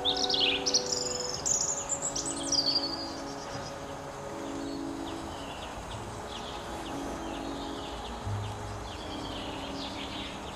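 A songbird singing loudly for the first three seconds in a quick run of varied chirps and trills, then fainter scattered chirps through the rest.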